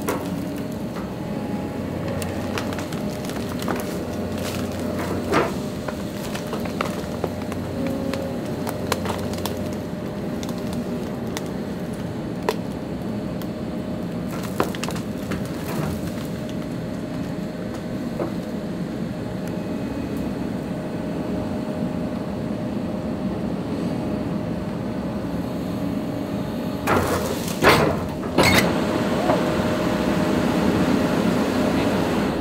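A tree trunk cracking and splintering as a tracked excavator's bucket and thumb push it over, with the machine's diesel engine and hydraulics running steadily underneath. Scattered sharp cracks come throughout, and near the end there is a quick run of the loudest cracks.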